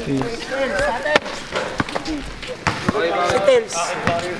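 Several people's voices talking and laughing over one another, unclear enough that no words come through, broken by a few sharp knocks.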